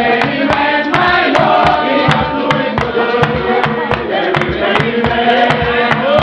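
A group of voices singing a hymn together in a chant-like style, over a steady beat of sharp percussive strikes about two to three a second.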